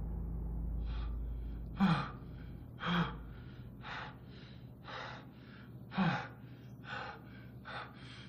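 A man breathing in quick, ragged gasps, about two breaths a second, with three sharper, louder gasps. A low rumble fades out over the first few seconds.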